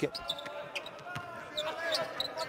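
Basketball dribbled on a hardwood court during live play, with scattered short high squeaks over low court noise.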